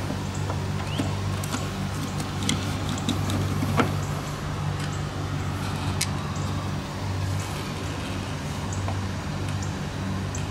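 A steady low hum runs throughout. Over it come scattered light clicks and taps, mostly in the first six seconds, as a screwdriver backs out the Phillips screws and the metal fuel pump access panel of a 1990 Corvette C4 is worked loose.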